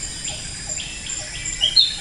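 Tropical rainforest soundscape: insects keep up steady high-pitched trills, one of them pulsing, under short bird calls, and a brief high call near the end is the loudest sound. A soft lower note repeats about four times a second underneath.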